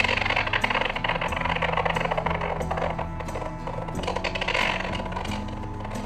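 Stock explosion sound effect: a blast that has just gone off, heard as a loud noisy rush that slowly fades, with background music underneath.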